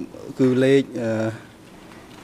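A man's voice speaking a few drawn-out, level-pitched syllables, stopping about one and a half seconds in, after which only a faint steady hum remains.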